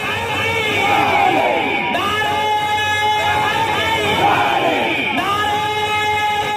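Live devotional kalam: a man's voice singing in long held, gliding notes, with a crowd's voices joining in.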